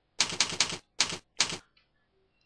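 Computer keyboard being typed on: about six sharp, separate keystrokes, a quick run of three and then two or three more spaced out, stopping about one and a half seconds in.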